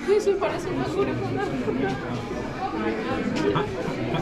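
Indistinct chatter of people talking in a large indoor hall, with a couple of short clicks near the start and again late on.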